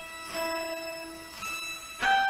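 Sustained electronic tones forming a held chord, with new notes entering about a third of a second in and again near the end, leading into the intro music.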